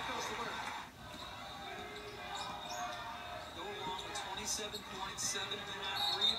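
Women's college basketball game heard through a TV broadcast: a basketball bouncing on the hardwood court over arena ambience, with a commentator talking faintly underneath.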